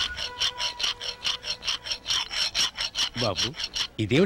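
A fast, even rasping rhythm of short scraping strokes, about five a second, with a brief voice near the end.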